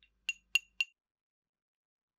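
Three quick, ringing clinks about a quarter second apart: a utensil tapping against a ceramic bowl as melted chocolate is poured out into a piping bag.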